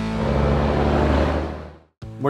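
A classic truck's six-cylinder diesel engine running with a deep drone as the truck approaches, under background music. Both fade out to silence near the end.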